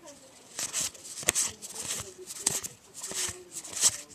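Freshly opened Magic: The Gathering trading cards being flipped through one by one in the hand, a few sharp card flicks between soft sliding rustles.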